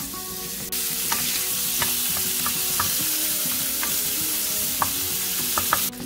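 Chopped bacon sizzling in a stainless steel frying pan, with light taps of a wooden spoon stirring it. The sizzle gets louder just under a second in and cuts off just before the end.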